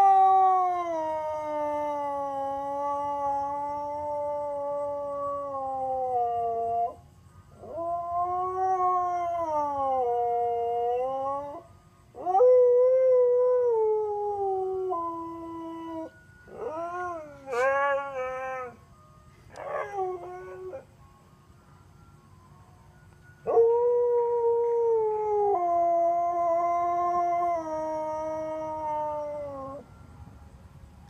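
Siberian husky howling in a series of long drawn-out howls, some falling or dipping and rising in pitch, with a few shorter howls in the middle and a pause of about two seconds before a last long howl that steps down in pitch. The dog is howling along to a passing ice cream truck's tune.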